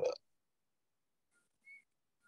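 A pause in a man's speech: the tail of a word at the very start, then near silence broken only by a brief, faint high tone near the end.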